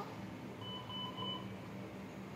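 Electronic medical equipment at a newborn's bedside, such as a patient monitor, beeping three short beeps run together about half a second in. A steady low hum runs underneath.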